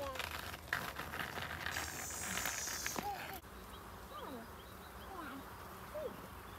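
Outdoor scuffing and rolling on an asphalt path, with roller-skate wheels and small footsteps and a brief hiss about two seconds in. It cuts off suddenly, leaving a quieter stretch with a few faint scattered chirping calls.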